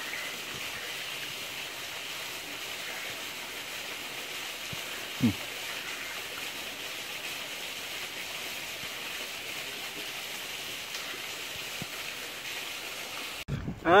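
Steady rushing of a small freshwater stream or waterfall. About five seconds in there is one brief tone that falls in pitch.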